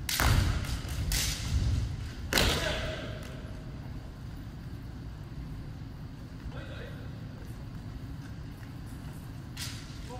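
Kendo bout on a wooden gym floor: three loud, sudden bursts of kiai shouts and stamping-foot thuds in the first two and a half seconds, then the steady murmur of the hall.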